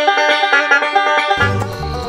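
Resonator banjo picked quickly in bluegrass style, a rapid run of bright notes. About one and a half seconds in, the banjo fades and music with a deep bass takes over.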